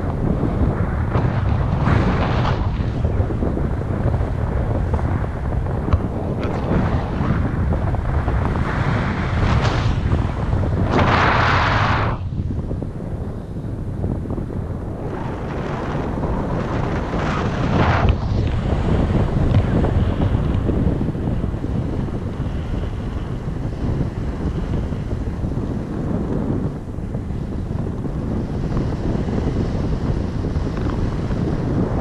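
Wind buffeting the microphone of a pole-mounted camera on a flying tandem paraglider: a steady, loud low rumble with a few stronger gusts, the strongest about eleven seconds in.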